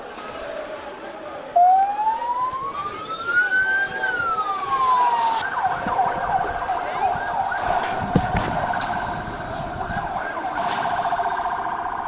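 Police siren: one long wail that rises for about two seconds and falls back, then switches to a fast warbling yelp for the rest, over the noise of a crowd. A sharp knock sounds about eight seconds in.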